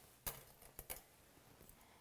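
Metal grooming shears clicking four times in quick succession, the first click the loudest.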